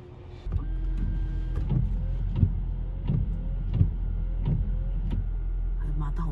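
Windshield wipers with freshly fitted blades sweeping back and forth across the glass at a steady pace, heard from inside the car. A short rising motor whine and a soft knock come with each stroke, a little under three-quarters of a second apart. Under them is a low steady hum that starts about half a second in.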